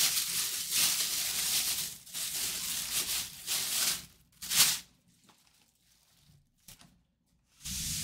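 Clear plastic bag being crumpled and rustled by hand, a dense crinkling for about four seconds, then one short rustle and a near-silent pause.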